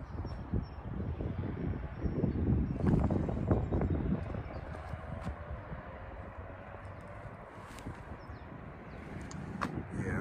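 Gusty wind buffeting the microphone, a low uneven rumble that swells and eases, strongest in the first few seconds.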